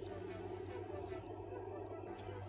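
Faint steady low hum with room noise and no distinct event.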